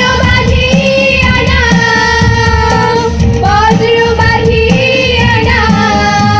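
A children's choir singing a song together through a microphone, holding long notes that slide between pitches, over loud amplified musical accompaniment.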